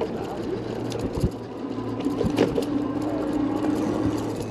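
Bicycle riding along with wind rushing on the microphone and a steady low hum underneath. Two short knocks from the bike come about a second in and again about halfway through.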